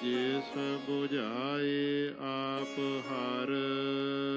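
Sikh gurbani kirtan: a voice singing a long, bending melodic phrase over a steady held instrumental drone. The voice falls away about three and a half seconds in while the drone carries on.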